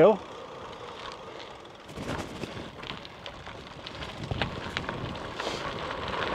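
Gravel bike tyres rolling along, turning into a crunching crackle of loose gravel under the tyres from about two seconds in.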